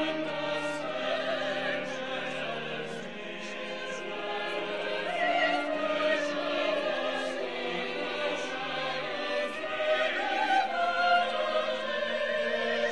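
Mixed church choir singing held chords, accompanied by organ and strings including a cello.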